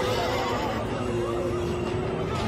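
Horses whinnying, with a quavering neigh near the start, over a steady deep rumble and a held low musical note.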